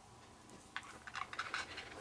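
Faint handling noise of macrame twine and floral wire as cords are drawn through a bead: almost nothing for the first half second or so, then soft rubbing with a few light clicks.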